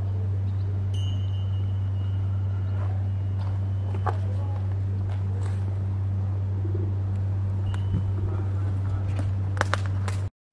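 A steady low hum, the loudest sound throughout, with a few faint clicks over it.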